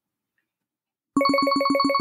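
Silence, then about a second in a synthesizer jingle starts abruptly: a single bright note pulsing rapidly, about seven or eight times a second.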